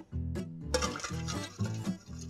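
Background music, and from about halfway in, a wire whisk beating egg yolks and cream in a stainless steel bowl with quick scraping strokes.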